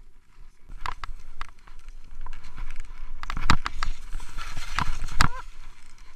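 Skis sliding and turning through fresh snow, heard from the skier's own camera. There is a rush of snow with scattered knocks and clicks from the skis and poles, loudest between about three and five seconds in.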